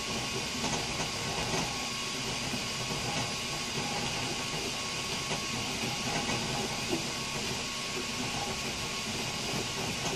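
FDM 3D printer printing, its stepper motors whirring in shifting pitches as the print head moves, over the steady hiss of its cooling fans.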